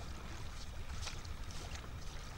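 Steady water-like noise: a low rumble with small scattered ticks and splashes over it, like water lapping.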